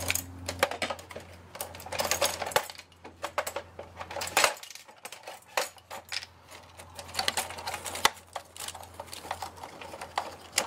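Irregular clicks and rattles of plastic and sheet-metal parts as an inkjet printer is taken apart by hand, with screwdriver work on its screws. A low steady hum runs underneath and stops about halfway through.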